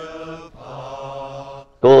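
Slow background music of long, voice-like held chords: one fades out about half a second in and a second chord is held for about a second, stopping just before speech starts near the end.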